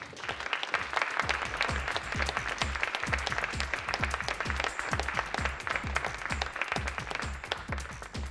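An audience applauding, with electronic music coming in about a second in: a steady kick drum beat at about three hits a second under the clapping. The applause fades near the end as the music carries on.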